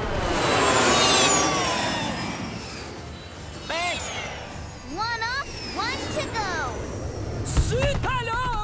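Cartoon sound effects: a loud whoosh with falling pitch as a flying jet swoops past. It is followed by several short, sliding voice-like cries and a thump near the end.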